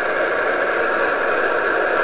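Steady static hiss from an amateur radio transceiver receiving 50.120 MHz in upper sideband: band noise heard while the distant station pauses between voice calls.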